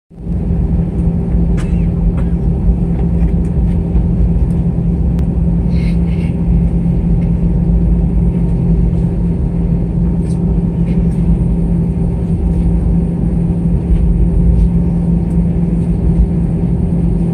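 Airbus A320 jet engines running at low taxi power, heard inside the cabin over the wing: a steady low rumble with a droning hum that holds one pitch, and a few faint clicks and rattles from the cabin.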